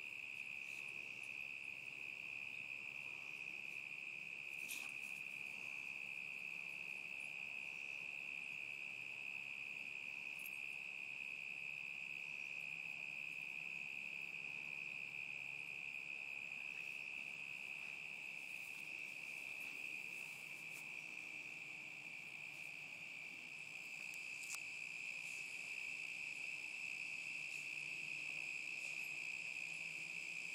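Crickets calling in one steady, unbroken high-pitched trill.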